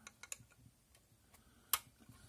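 Light ticks and clicks of a screwdriver working a small screw out of the end panel of a Hantek 6022BE USB oscilloscope case: a few faint clicks, then one sharper click near the end.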